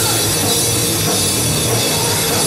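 A rock band playing live at full volume: a drum kit pounding under distorted electric guitar and bass, loud and dense with no break.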